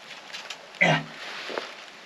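A man's short grunted "nie" about a second in, with a couple of faint clicks just before it.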